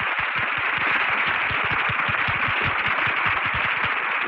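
Studio audience applauding steadily, as heard on an old, narrow-band radio broadcast recording.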